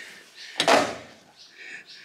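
A short scraping rustle as a chrome T-handle tire plug insertion tool is set down on a seat, followed by fainter handling noise.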